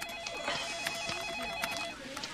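A desk telephone ringing: one electronic trilling ring, a fast warbling tone that lasts nearly two seconds and then stops.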